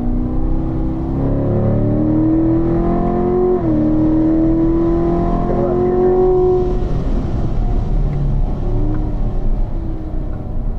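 Corvette V8 engine at full throttle heard from the cabin, rising in pitch through third gear, dropping sharply at the upshift to fourth about three and a half seconds in, then climbing again. About seven seconds in the driver lifts off and the engine note falls away for braking, settling lower near the end.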